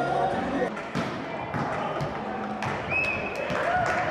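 Sports-hall ambience: people's voices chattering and a ball knocking several times as it is hit and bounces on the hall floor.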